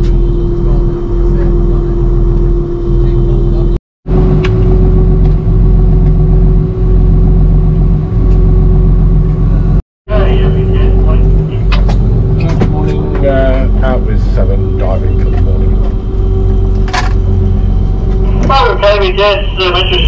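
Dive boat's engine running steadily under way, a loud, even low hum with a steady drone above it; the sound cuts out briefly twice.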